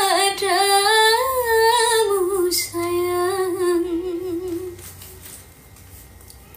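A woman singing unaccompanied, one long held phrase whose pitch wavers and slides in a vibrato-laden line, fading out about five seconds in.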